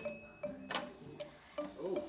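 A toaster oven's timer knob is turned off with a click and a short ringing ding of its bell, followed by light knocks as the glass door is pulled open.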